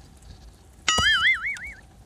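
A comedic boing-style sound effect: a click followed by a short tone whose pitch wobbles up and down about four times a second, lasting under a second, about a second in.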